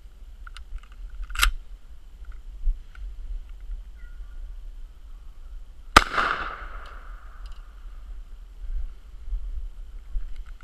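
A Mossberg 500 .410 pump-action shotgun fires a single quarter-ounce slug about six seconds in: one sharp report with a ringing tail of about a second. A lighter sharp knock comes about a second and a half in, and there are a few faint clicks from handling the gun.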